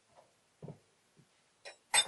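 Faint short knocks and a click of small metal parts being handled and set down on a wooden workbench, between long stretches of quiet.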